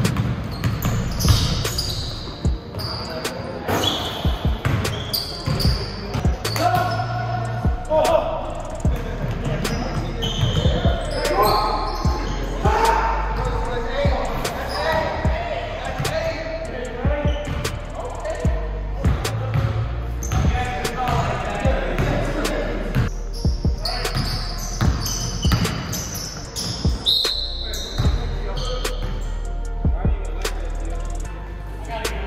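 Live indoor basketball game: a basketball dribbled and bouncing on a hardwood court in sharp repeated knocks, with short high squeaks and indistinct shouts from players echoing in the gym.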